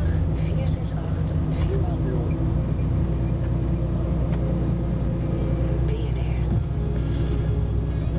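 Steady low drone of a lorry's diesel engine heard inside the cab while driving slowly, with a radio talk programme playing faintly.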